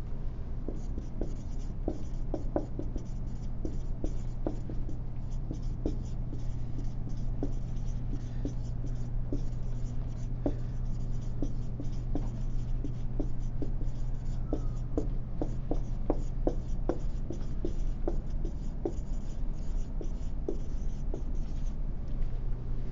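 Handwriting: a run of short, irregular scratching strokes and taps, over a steady low hum.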